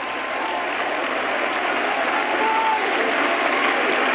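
A congregation applauding steadily, with a few voices faintly calling out in the clapping.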